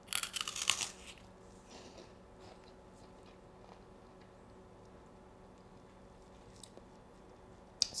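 A bite into a crisp baked egg-white meringue cookie: a burst of crunching in the first second, then a little faint chewing. The meringue is crunchy all the way through.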